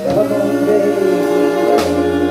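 A woman singing with a live soul band, her voice and the band's notes held steady, with a drum hit near the end.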